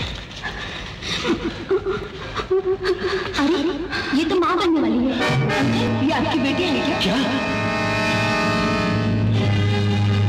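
Dramatic film background score: sharp hits and wavering lines at first, then a sustained held chord from about five seconds in.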